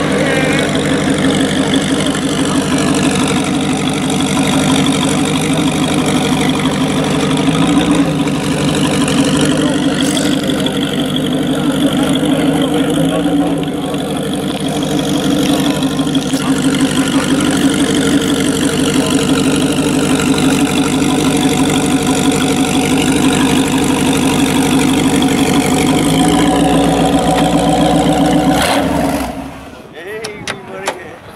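Ford hot rod's V8 engine idling loudly through its exhaust, its note rising briefly a few times, then cutting out near the end.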